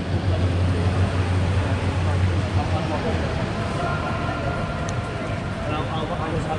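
Indoor velodrome hall ambience: a steady low hum that fades about halfway through, under an even wash of background noise and distant chatter.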